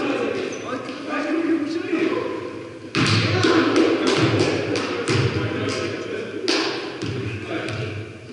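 Basketball bouncing on a hardwood gym floor: a run of sharp, irregular thuds starting about three seconds in, echoing in the large hall.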